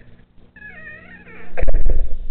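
A high, wavering, meow-like cry lasting under a second, followed near the end by a couple of loud, low thumps.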